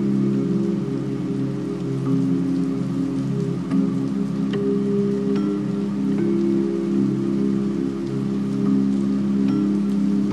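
Calming ambient music: soft sustained low chords over a steady hiss like falling rain, with light chime notes struck every few seconds.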